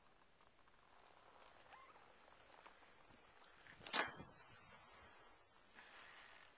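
Near silence with one brief, sharp knock about four seconds in.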